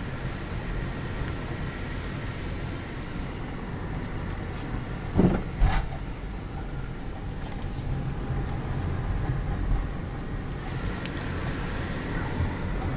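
Steady low engine and road hum heard from inside a car driving slowly. Two brief, louder sounds come a little past the middle.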